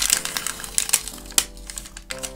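Paper wrapper of a sterile gauze compress packet crinkling and clicking as it is handled, with scattered sharp clicks, the loudest right at the start and about a second and a half in. Faint background music underneath.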